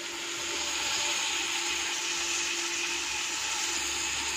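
Onion-tomato masala frying in oil in a pot, giving a steady sizzling hiss.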